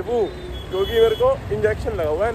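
People talking over the steady low rumble of street traffic, with a thin high tone for under a second near the middle.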